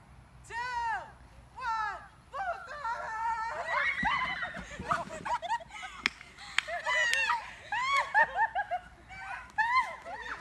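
Young people's voices shouting, squealing and laughing in rising-and-falling calls while inflatable bubble balls bump together, with one sharp knock about six seconds in.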